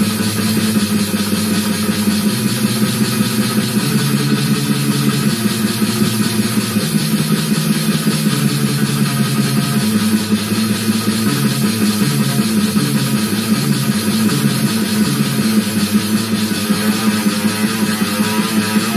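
Distorted electric guitar with a microtonal 18-tone equal temperament neck, five strings tuned to a sort of drop D, playing fast death/thrash metal riffs through a small Ibanez Tone Blaster amp. The low riff notes change about every second, over a fast drum loop.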